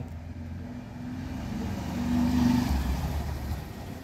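A motor vehicle's engine passing by, swelling to a peak about halfway through and then fading.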